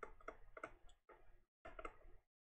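Faint, quick ticks of a stylus tapping on a pen tablet while handwriting, about four or five a second, then fading out.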